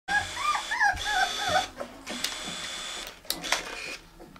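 Young puppy whimpering: a quick run of about six short, squeaky cries that rise and fall in pitch over the first second and a half, then soft rustling with a few light clicks as the litter shifts on the bedding.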